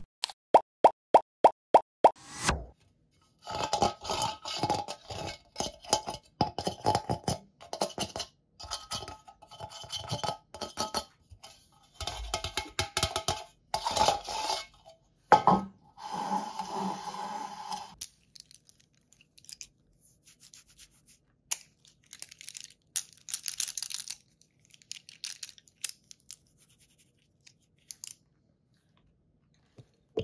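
A quick run of short pitched pops, about four a second, then hands handling objects on a metal baking tray: dense scraping, rustling and tapping that thins out to scattered clicks over the last dozen seconds.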